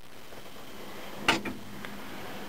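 A single short knock about a second in, then two fainter ticks, over a steady low hiss.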